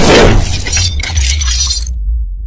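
Logo-intro sound effects: a loud crashing impact with a glass-shatter effect, followed by tinkling, glittering debris over a deep bass rumble. The high tinkling cuts off suddenly near the end.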